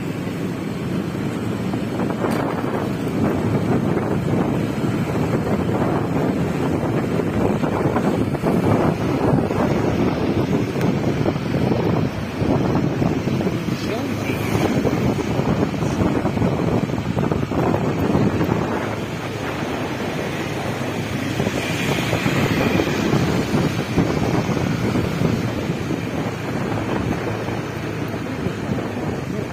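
Wind buffeting the microphone of a moving motor scooter: an uneven rush that swells and dips, with the scooter's running and street traffic underneath.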